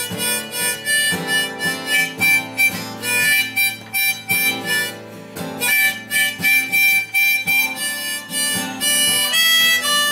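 An acoustic guitar, an Ibanez copy of a Gibson Hummingbird, strummed in a steady rhythm of about two strokes a second, with a harmonica playing long held notes over it.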